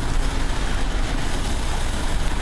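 Steady outdoor background noise on a field microphone: a low rumble with a hiss over it.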